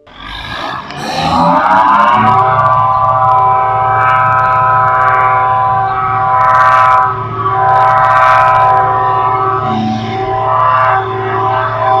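A siren rising in pitch over the first couple of seconds, then holding a steady tone with a low hum beneath it.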